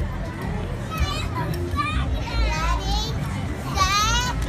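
Young children's excited voices and high squeals as they play, rising in pitch near the end, over a steady low rumble.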